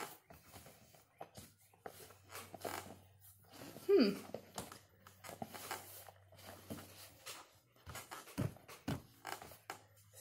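Hands kneading and pressing soft homemade cornstarch play dough on a floury wooden tabletop and in a plastic tub: irregular soft pats, taps and rubbing.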